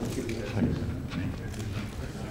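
Indistinct low conversation in a room, with several scattered sharp clicks of still-camera shutters.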